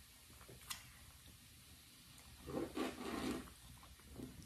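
Quiet mouth sounds of eating and drinking at the table: a faint click under a second in, then a short patch of sipping and chewing noise with a brief low hum about two and a half seconds in.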